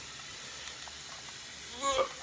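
Steady low hiss of background noise, with a few faint soft ticks from hands pinning raw duck skin with a toothpick. A man's voice begins near the end.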